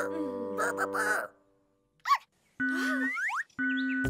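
Cartoon soundtrack: a held musical chord with wordless character vocal sounds, which stops about a second in. After a short silence comes one sharp, bright sound effect, then a steady tone with quick rising whistle-like glides.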